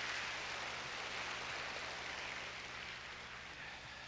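Audience applause, slowly dying away.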